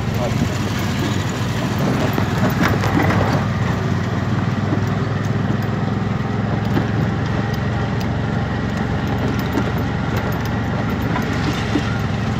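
Steady engine and road noise heard from inside a moving auto-rickshaw.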